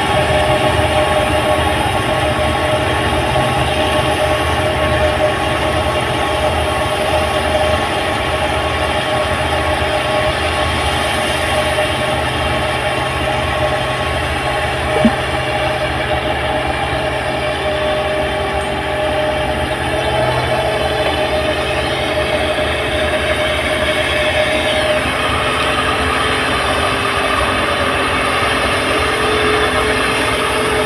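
New Holland 8060 tracked rice combine harvester at work harvesting, its engine and threshing machinery making a loud, steady drone with a held whine running through it. A single sharp click about halfway through.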